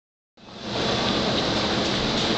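A steady hiss of outdoor background noise picked up by the camera's microphone, fading in about a third of a second in.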